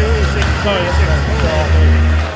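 Indistinct voices over a steady deep hum, the reverberant background of an indoor hockey arena during warm-up.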